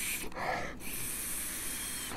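A man sniffing a glass of beer, drawing long breaths in through his nose with his face in the glass, to smell its aroma.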